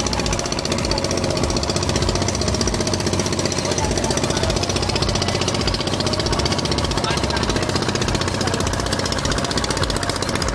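Motorboat engine running steadily under way, a rapid, even chugging.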